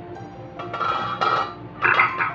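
A spatula scraping and stirring thick masala as it fries in oil in a nonstick pan, in two louder strokes, the second near the end, over soft background music. The masala is being fried until its oil separates.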